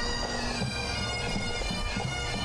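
A marching pipe band playing bagpipes: a steady drone held under the chanter's stepping melody.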